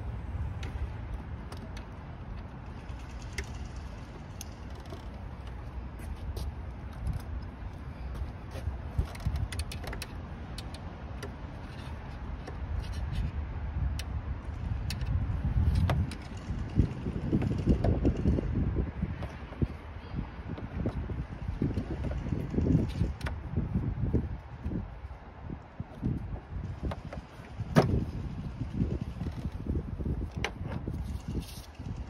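Hand tools and engine-bay parts being handled: scattered clicks and light knocks over a low rumbling rustle that swells about halfway through, with a sharper click near the end.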